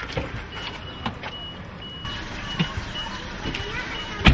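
A car's warning chime beeping about twice a second while the driver's door stands open, with the clicks and knocks of the door and of someone getting into the seat.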